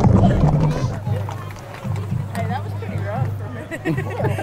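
Indistinct voices mixed with music, loudest during the first second and then quieter.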